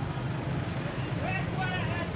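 Motor scooter engines running steadily in a street crowd, with people's voices talking from about a second in.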